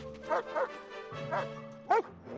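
Sled dogs barking: four short, sharp calls in two seconds, the last and loudest near the end, over steady background music.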